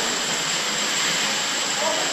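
Steady rushing hiss, even and without pitch or rhythm.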